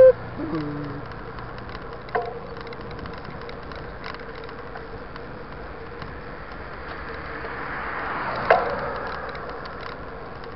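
Steady wind and tyre noise from riding a mountain bike along a paved road, with a car coming up and passing close by, loudest about eight and a half seconds in.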